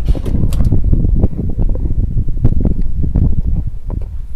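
Wind buffeting the microphone in an uneven low rumble, with scattered knocks and slaps as a freshly landed eeltail catfish thrashes on the boat's deck.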